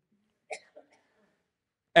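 Near silence in a pause in a man's sermon, broken by a brief faint mouth sound about half a second in, with a smaller one just after. His speaking voice starts again right at the end.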